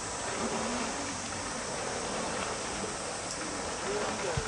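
Steady poolside ambience: an even wash of noise with faint distant voices.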